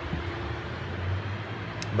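A steady low mechanical hum, with a faint click near the end.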